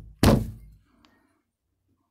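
A loud, heavy thunk about a quarter second in that dies away within half a second, followed by a faint tick about a second in.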